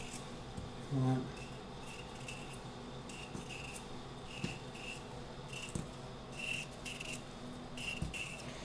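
Paring knife peeling a raw potato by hand: a series of short, faint scrapes as the blade cuts around the skin, about a dozen strokes. A brief hum from the cook about a second in.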